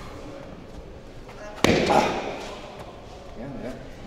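A single loud punch from a boxing glove landing on a man's body about one and a half seconds in, with a short vocal reaction right after it.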